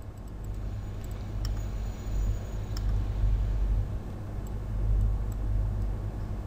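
Low, steady rumble of background noise on the microphone, rising and falling slightly, with two faint clicks about a second and a half and three seconds in.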